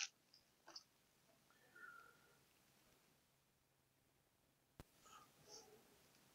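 Near silence, with a few faint ticks of small plastic model-kit parts being handled.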